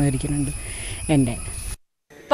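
A woman's voice speaking in short phrases over a steady hiss with a faint high whine. The sound cuts off abruptly to dead silence near the end.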